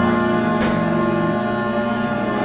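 A small live ensemble playing held, sustained chords, with a single sharp percussive hit about a third of the way in.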